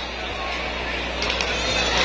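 Steady stadium background noise from the field and stands at a night game: an even wash of distant crowd sound over a low hum, rising slightly.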